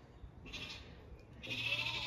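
Zwartbles sheep bleating: a short bleat about half a second in, then a longer one past the middle.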